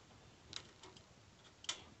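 Quiet, with a few faint, short clicks, the sharpest one near the end.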